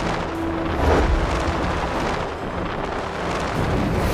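Rushing-wind sound effect with a low rumble, swelling loudly about a second in and again near the end.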